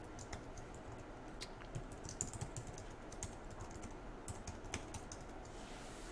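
Computer keyboard typing: faint, irregular key clicks as a line of code is typed.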